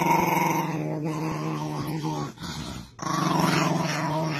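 A small dog growling in two long, steady stretches, with a short break a little past two seconds in.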